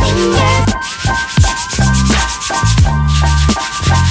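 Sandpaper rubbed back and forth over a 3D-printed plastic hand, with background music and its bass line playing underneath.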